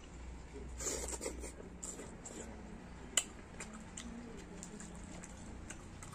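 Close-up eating sounds: a person chewing a mouthful of food with wet mouth noises, with a burst of crackly chewing about a second in and a single sharp click about halfway through.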